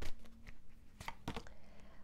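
Tarot cards being shuffled and handled by hand: a few short, separate card snaps and slaps, spaced roughly half a second apart.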